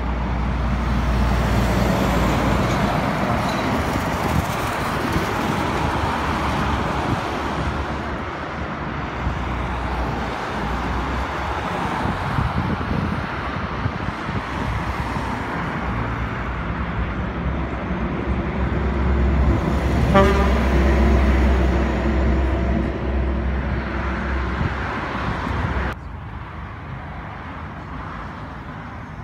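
Road traffic passing at night: a steady rumble of engines and tyre noise from cars and lorries. A louder vehicle passes about twenty seconds in, and the noise drops suddenly near the end.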